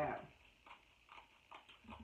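Kitchen shears cutting through the shell of a cooked king crab leg: a few faint, short snips spread over a second or so.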